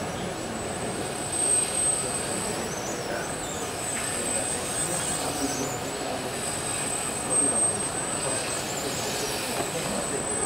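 Steady high-pitched electrical whine from the robot arm's joint motor drives as the arm moves, swelling twice, about a second and a half in and again near 7.5 seconds, over a background of indistinct voices.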